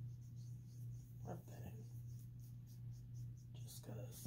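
Quiet sniffing of perfume sprayed on the wrist and arm, with soft rubbing of hand on skin, over a steady low electrical hum. A short, louder sniff comes near the end.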